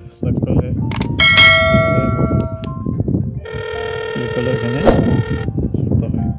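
Hikvision IP video intercom answering a press of the door station's call button: a short chime at about a second in, then a steady electronic ringing tone for about two seconds, signalling that the call is going through to the indoor monitor.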